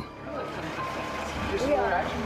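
Airport kerbside ambience: a steady bed of traffic noise with a short steady beep in the first second, then people talking from about one and a half seconds in.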